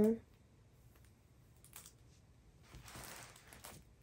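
Faint rustling and a few light ticks of a diamond-painting canvas's plastic cover film being handled, a little busier in the last second or so.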